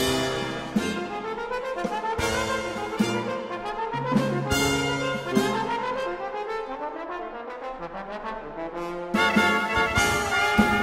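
Brass quintet of piccolo trumpet, trumpet, French horn, trombone and tuba playing a Dixieland-style blues, with bending, sliding notes in several voices; the full ensemble comes in louder about nine seconds in.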